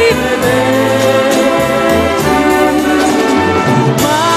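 Orchestral accompaniment with brass playing a sustained instrumental passage of a 1960s Italian pop ballad, without the lead voice.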